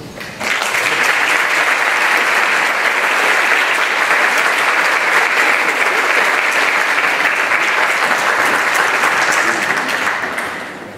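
Congregation applauding steadily, starting about half a second in, just after the music stops.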